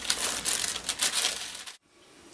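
Scissors cutting through tissue paper, the thin paper crinkling and rustling under the hand, with small snipping clicks; it stops abruptly near the end.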